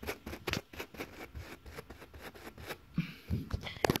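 A coarse brush scrubbing carpet pile in quick back-and-forth strokes, about five a second, working a spotting gel into a red stain. The scrubbing stops about three seconds in, and a sharp click follows just before the end.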